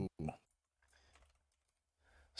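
Faint computer keyboard typing, a few light clicks, after a brief "mm" from one of the speakers.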